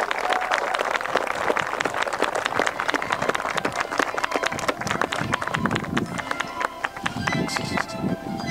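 Wedding guests clapping and cheering. Music comes in under the clapping in the second half and is clearer near the end.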